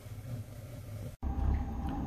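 Low, steady rumble of the flame in a homemade waste-oil heater, a drip pot inside an old coal stove. About a second in the sound cuts off sharply, and after it the heater, now up to temperature, runs with a louder, deeper rumble.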